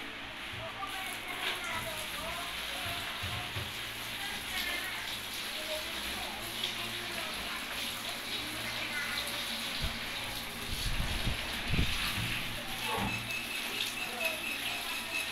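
Faint background voices over a steady low hum, with rustling and crinkling of a thin plastic bag being handled near the end.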